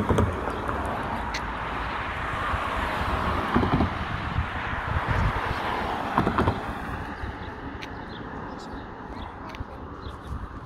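Road traffic passing: a car's tyre and engine noise swells and fades away over several seconds, with wind rumbling on the microphone.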